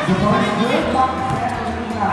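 Thuds of a volleyball being struck during a rally, over the voices and shouts of players and spectators.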